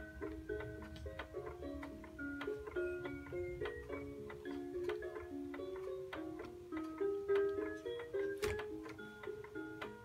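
A baby swing playing an electronic lullaby: a simple melody of short, plucked notes.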